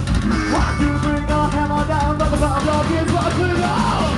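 Live rock band playing loudly: drum kit hits in a steady beat under electric guitar, with a singer's voice on top.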